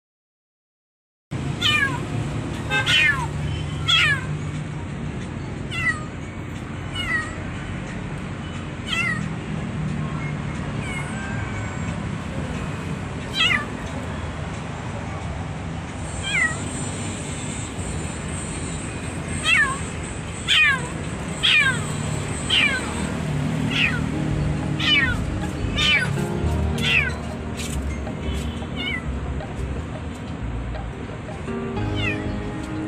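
Black kitten meowing over and over, starting about a second in: short, high, thin cries that slide down in pitch, coming every second or two in irregular runs.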